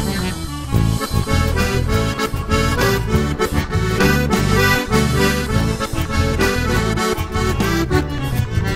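Instrumental break in a gaúcho folk song: an accordion plays the melody over a steady rhythmic accompaniment, with no singing.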